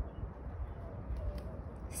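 Quiet outdoor background: a low steady rumble with a couple of faint clicks about a second in.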